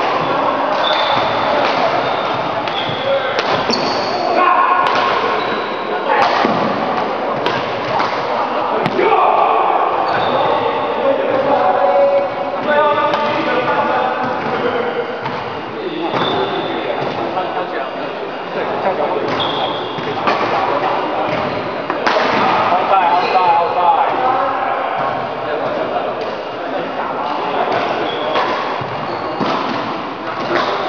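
Badminton rally: repeated sharp racket strikes on the shuttlecock and footfalls on the court, over the voices of onlookers in an echoing sports hall.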